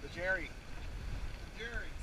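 Steady low wind and water noise aboard a sailboat under way, with two brief snatches of crew voices, one near the start and one near the end.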